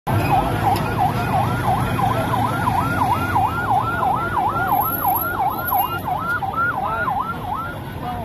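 Police vehicle siren sounding a fast yelp, its pitch rising and falling about two and a half times a second, with low engine noise from heavy vehicles underneath. The siren stops just before the end.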